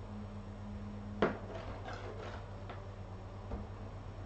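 A single sharp knock about a second in, followed by a few light taps and rustles, over a steady low hum.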